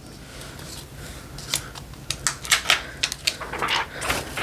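A handheld eyeshadow palette being handled: a run of light, irregular clicks and taps that starts about a second and a half in and continues to the end.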